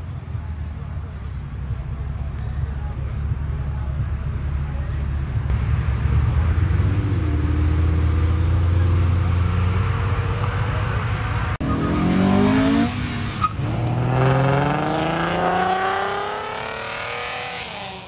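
Sports car engines accelerating away hard. A low engine drone builds over the first half, and in the second half the engine note rises in two long revving pulls, one after another.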